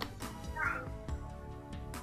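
Soft background film music with held tones and a few light percussive taps. A brief high, wavering sound comes about half a second in.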